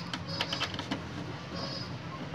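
A few light clicks and scrapes as a USB pen drive is fitted into a port on the back of a desktop PC tower, over a steady low hum.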